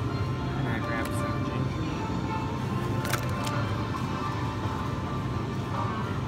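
Supermarket ambience: background music and indistinct voices over a steady low hum, with a couple of short clicks about one and three seconds in.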